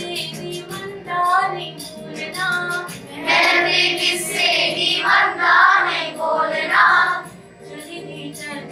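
A group of children singing a line of a Kashmiri folk song together, getting louder from about three seconds in.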